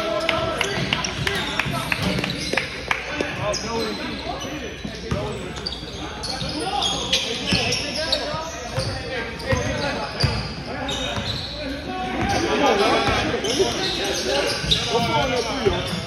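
Basketball bouncing repeatedly on a hardwood gym floor, with voices of players and onlookers echoing around a large hall, the chatter getting busier near the end.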